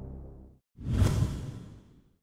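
Background music fading out, then after a brief silence a single whoosh sound effect that swells up about three quarters of a second in and dies away.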